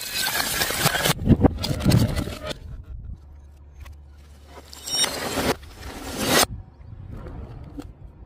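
Objects dropped from height crashing onto paving tiles. In the first two and a half seconds there is a loud noisy crash with a couple of heavy thumps, and another crash comes about five seconds in.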